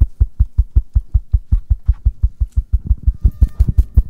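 Music: a fast, even bass-drum beat of about six thumps a second, with keyboard-like notes joining about three seconds in.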